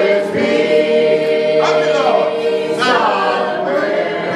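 A man and two women singing a gospel song together into handheld microphones, holding long notes in harmony.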